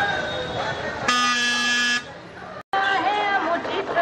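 Street crowd voices, then a vehicle horn held steadily for about a second. After a brief drop and an abrupt break, singing with music starts up over the voices.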